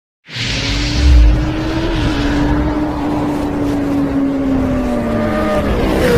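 Race car at speed: a single held, high whine that sags in pitch near the end, with a heavy low thud about a second in and a rush of hiss as it starts.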